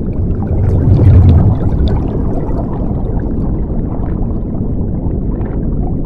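Underwater ambience sound effect: a loud, low, muffled rush of water. It swells to its loudest about a second in, then holds steady.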